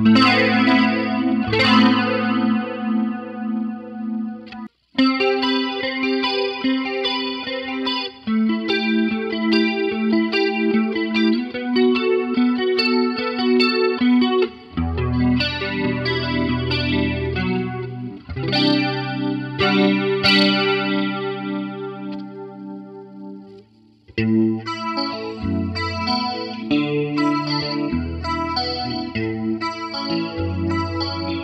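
Electric guitar with Suhr V70-style single-coil pickups playing chords and melodic fills through an effects unit with a chorus effect. The playing breaks off briefly about five seconds in and fades down just before resuming near the end.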